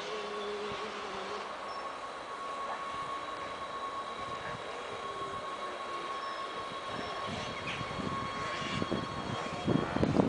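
NS Sprinter Lighttrain (SLT) electric multiple unit approaching along the platform with a steady electric whine from its drive. The running noise grows towards the end as the cab draws level, with a loud rumbling burst at the very end.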